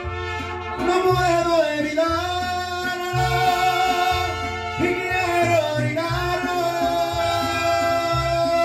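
Live mariachi band playing an instrumental passage: trumpets hold a wavering melody over a bass line that moves in a steady rhythm.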